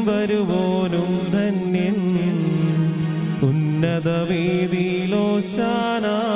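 A voice chanting a Malayalam liturgical prayer of the Mass in long, sustained sung lines that slide and waver in pitch, with a short break for breath about halfway through.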